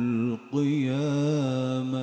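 A man reciting the Qur'an in a melodic, ornamented style, holding out long wavering notes into a microphone, with a brief break for breath about half a second in.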